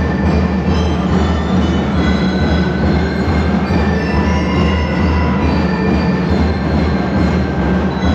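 A drum and lyre corps playing: bell lyres ringing a melody of high notes over a dense, steady drum beat.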